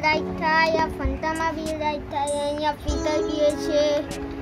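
A battery-operated dancing robot toy playing its built-in song: a high, child-like voice singing a run of short held notes over music.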